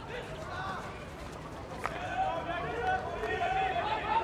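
Indistinct men's voices talking, growing stronger in the second half, with one sharp knock a little before halfway.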